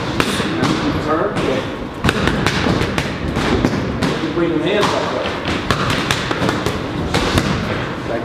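Scattered thuds of boxing-glove punches and shuffling feet on the ring canvas, with voices in the background.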